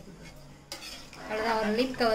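A ladle stirring thick rice porridge in an aluminium pressure cooker, clinking against the pot, with a sharp knock about two-thirds of a second in.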